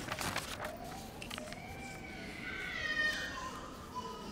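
A few scattered hand claps, then one high-pitched voice call that rises and falls over about two seconds and is loudest about three seconds in.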